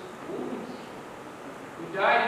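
A low, quiet voice sound, brief, about half a second in.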